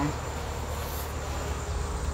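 Insects, likely crickets, giving a thin, steady high-pitched drone, over a steady low rumble.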